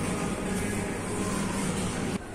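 Supermarket produce-display misting system spraying: a steady hiss of water spray over a low pump hum, starting suddenly and cutting off after about two seconds.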